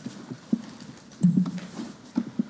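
A few soft, scattered knocks and bumps from handling at a lectern, with a slightly longer bump a little past the middle.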